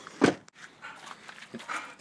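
Dog panting, with one loud short sound about a quarter of a second in.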